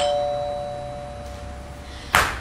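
Two-note doorbell chime: a higher note, then a lower one struck right at the start, both ringing on and slowly fading.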